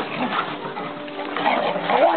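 Pet dogs making sounds, busier near the end, over steady background music.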